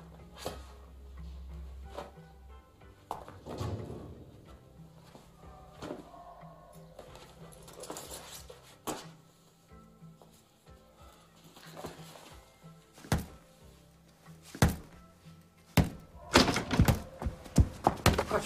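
Faint background music with a string of sharp thuds in the last five seconds. The thuds come closer together and are loudest near the end.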